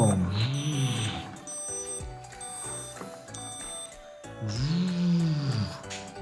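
A person's voice making a toy-play construction-machine engine noise: two low growls that rise and fall in pitch, a short one at the start and a longer one near the end. Light background music plays under it, and a few plastic clicks come in between.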